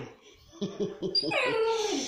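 A pit bull-type puppy whimpering, a few short high calls and then a longer falling whine near the end, as it waits to be fed.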